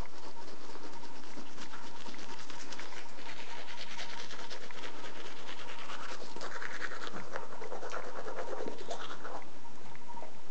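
A toothbrush scrubbing teeth: a rapid, continuous scratchy rasp of bristles.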